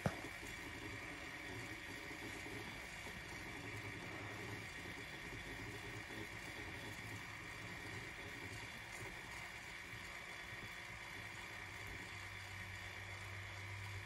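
Faint steady hum of a tumbler turner's small electric motor turning the cup, the low hum growing a little stronger near the end.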